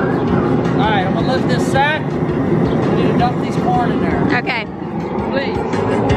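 A steady, loud rushing noise, typical of a propane jet burner running under a crawfish boil pot, with a man talking over it.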